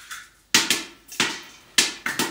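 Three sharp cracks at a stainless steel stockpot on an induction hob, about 0.6 s apart, each fading quickly.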